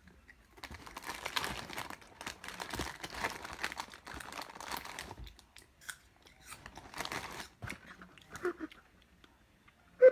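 Paper and plastic fast-food bags crinkling and rustling as they are handled and packed into a cardboard box: dense crackling for about the first five seconds, then sparser rustles.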